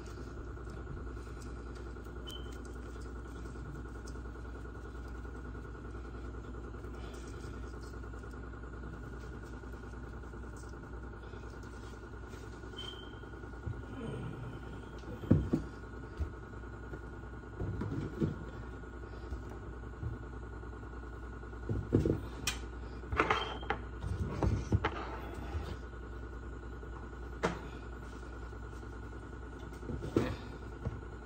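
A steady low room hum, then from about halfway through a scattering of short knocks and rattles as plastic seasoning shakers are handled and shaken over a steel mixing bowl.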